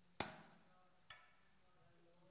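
Two knocks with a hand on a hard tabletop, imitating a knock at a door. They come about a second apart, the first louder and sharper.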